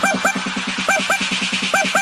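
Electronic DJ remix in the Indonesian 'jedag jedug' style: a rapid, steady low bass pulse under pairs of short, upward-sliding stabs that come about once a second.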